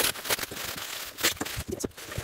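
Plastic bubble wrap crinkling and rustling as a wrapped piece is handled and pushed into a cardboard box, with several sharp crackles and snaps scattered through.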